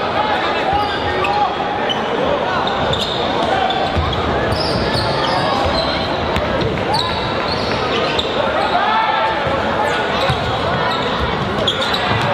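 Basketball being dribbled on a hardwood gym court, its bounces under the steady chatter of spectators.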